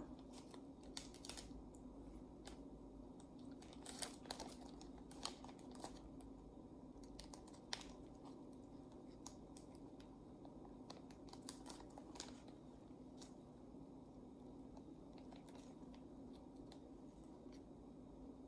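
Faint, scattered crinkles and small clicks of a thin plastic model-rocket parachute canopy being handled as string is threaded through its holes, over a low steady hum.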